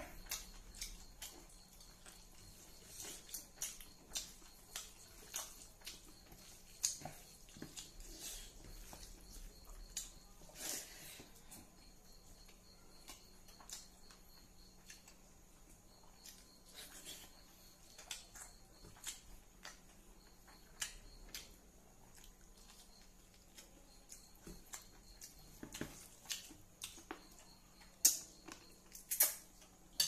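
Close-up eating sounds: faint, irregular wet clicks and smacks of chewing a mouthful of rice and smoked pork eaten by hand, with a few louder smacks near the end.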